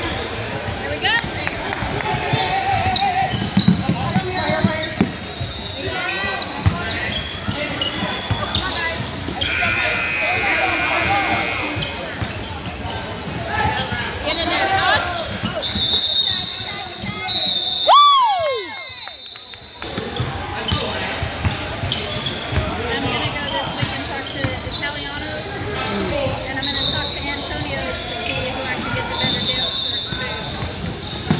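Game sounds in a large, echoing gym: a basketball bouncing on the hardwood court and players moving, under the steady talk of spectators. Brief high-pitched squeaks or tones come through about halfway and again near the end.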